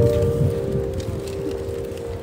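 Last plucked notes of a small lever harp ringing on and slowly fading, with no new notes struck, over a low outdoor rumble.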